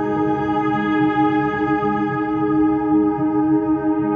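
Ambient relaxation music: a long, steady chord of sustained tones with an echoing, effects-laden sound and no clear beat.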